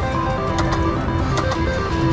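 Three-reel slot machine spinning its reels to a beeping electronic tune of short notes stepping between a few pitches, with sharp clicks as the reels come to a stop. A low casino hubbub runs underneath.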